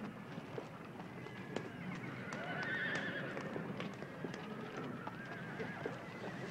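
A herd of horses milling about, hooves clopping in scattered clicks. One horse whinnies loudly about two and a half seconds in, and another whinnies more faintly near the end.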